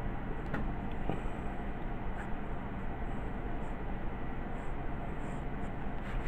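Pencil drawing on paper: faint scratching of the lead over a steady background hiss, with a few light ticks.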